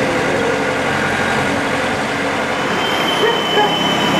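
Diesel engine of a JCB backhoe loader running steadily at the excavation site.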